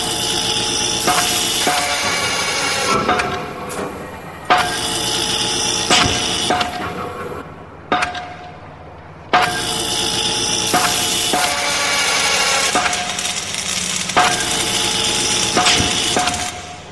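Heavy metal band playing a stop-start riff: distorted guitars, bass and drums with crashing cymbals hit together in loud sections that cut off abruptly, with a short near-silent break about eight seconds in.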